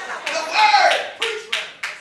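Hands clapping in a steady rhythm, about three claps a second, with a voice calling out in the first second.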